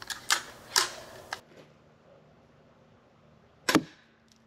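Crossbow being shot: a few sharp snaps in the first second and a half, then a louder snap near the end.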